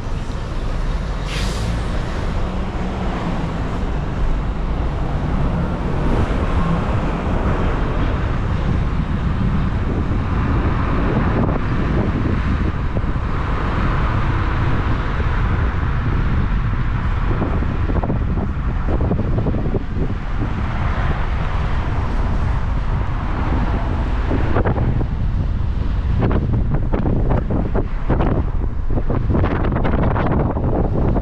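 Wind buffeting an action camera mounted on the outside of a moving car, over a steady rumble of tyre and road noise. The buffeting turns gustier in the last few seconds.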